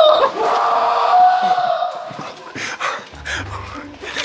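A man's long, loud yell, held on one pitch and fading out about two seconds in, followed by short breathy laughs.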